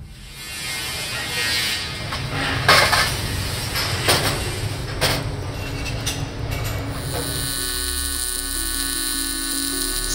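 A few sharp metallic knocks over workshop noise as parts are handled, then, from about two-thirds of the way in, a steady electric buzz from a TIG welding arc on stainless steel.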